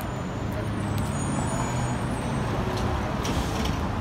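City street traffic: a steady rumble of car engines and tyres on the roadway.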